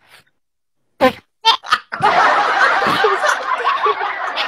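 Two people laughing: after about a second of near silence come a few short bursts of laughter, then steady, unbroken laughing from about two seconds in.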